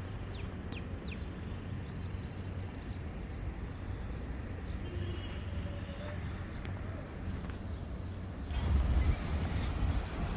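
Open-air ambience: a steady low rumble of distant traffic, with birds chirping in the first few seconds. Near the end, wind buffets the microphone.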